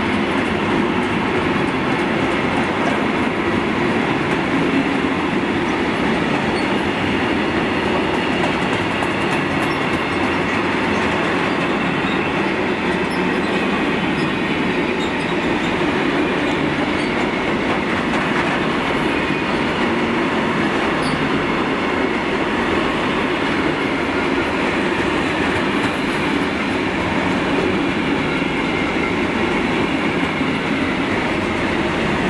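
Freight train of bogie sliding-wall covered wagons rolling steadily past: a continuous rumble and rattle of wagon wheels on the rails, unbroken and even in level.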